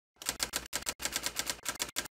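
Manual typewriter keys striking in quick succession, about six or seven clacks a second with a few brief pauses, as letters are typed onto the paper.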